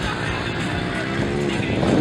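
Mini motocross bike engines revving on the track, rising in pitch in the second half, over background music from the PA.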